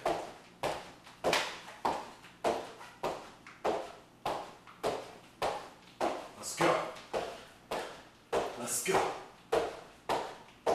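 Sneakered feet landing on a hardwood floor in a steady rhythm, just under two thumps a second, each with a short room echo: repeated lateral jumps over a bag.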